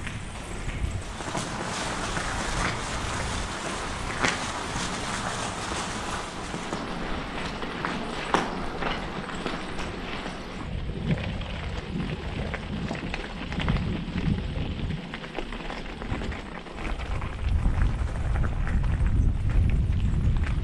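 Bicycle tyres rolling over a gravel trail, with the bike rattling and an occasional sharp knock over bumps. The low rumble grows heavier near the end.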